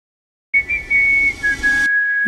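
Whistled melody opening a pop song: a high note comes in about half a second in, then steps down to a lower held note.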